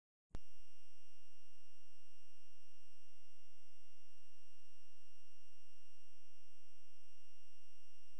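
A steady electronic test tone, one unchanging pitch with fainter overtones, starting a fraction of a second in and holding at an even level.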